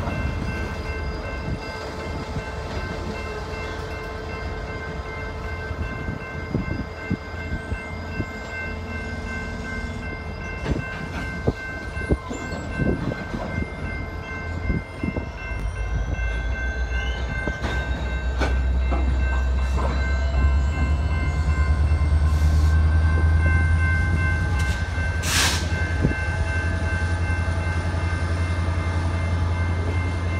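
Freight train of boxcars and covered hoppers rolling past over a road crossing: a steady rumble of steel wheels with repeated clicks and knocks from the rails, turning deeper and louder a little past halfway. A thin rising squeal comes in over the middle, and one sharp clank sounds near the end.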